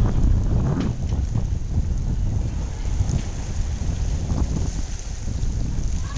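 Wind buffeting the microphone, a steady low rumble, with the sea washing at a rocky shore beneath it.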